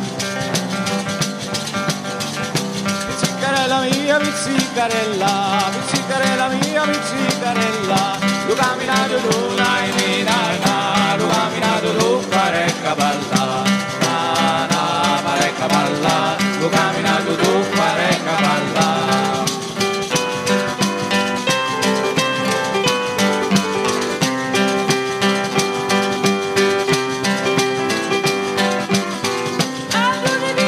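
A live pizzica, the fast Salentine folk dance, played on acoustic guitar, tamburello (jingled frame drum) and keyboard, with a steady driving beat. A voice sings over it for much of the first two-thirds, then the instruments carry on.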